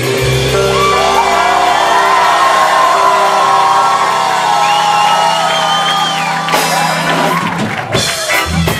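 Live ska band with horns and Hammond organ holding a long sustained chord, while the audience whoops and shouts over it. The held chord cuts off just before the end.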